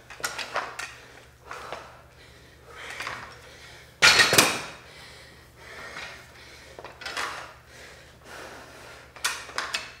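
Metal adjustable dumbbells knocking and clanking as they are set down on the floor and picked up again during clean and presses: a scatter of short knocks, with one louder clank about four seconds in.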